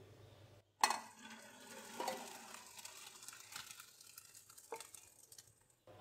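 Boiled rice and its cooking water poured from a pot into a perforated metal colander: a sudden splash about a second in, then the water draining through the holes and fading away, with a light knock near the end.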